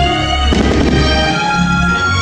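Fireworks-show music with a firework shell bursting about half a second in, followed by a brief crackle of its sparks.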